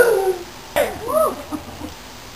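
A performer's wailing cries of torment: a cry falling in pitch at the start, then a shorter wail that rises and falls about a second in.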